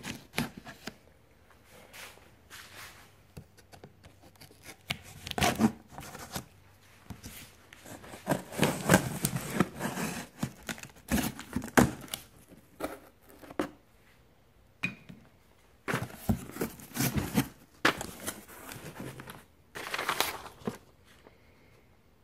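Cardboard shipping box being opened and unpacked by hand: cardboard and packing scraping, tearing and rustling in irregular bursts, with occasional knocks.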